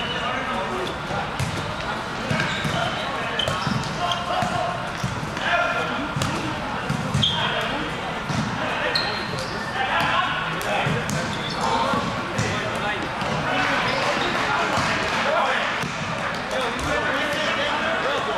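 Indoor volleyball game: players' voices calling out and the short sharp smacks of the ball being hit, echoing in a large gym.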